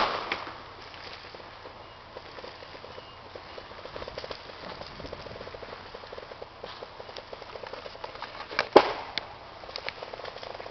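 Branches and brush snapping as a logging cable drags through them: a run of small crackles and twig snaps, with one loud crack near the end.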